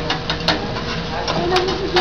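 Hibachi table din: murmured voices with a few sharp clicks of metal utensils on the griddle and a faint steady hum.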